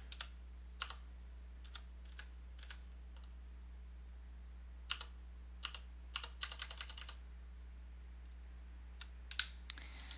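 Computer keyboard keystrokes: scattered single clicks, a quick run of keypresses about six to seven seconds in, and a couple more near the end, over a faint steady low hum.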